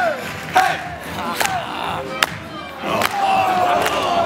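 Male chorus shouting falling 'hey'-like calls and whoops over dance music, ending on one long held call. Sharp claps land on the beat about every 0.8 s.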